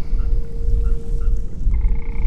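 Layered ambience: a constant low rumble under a steady hum, with short calls repeating a few times a second and a longer, several-pitched call starting near the end.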